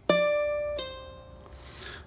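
Kala ukulele's A string plucked once at the fifth fret (D), then pulled off to the third fret (C) under a second in, so that one pluck sounds two notes, stepping down and ringing out as it fades.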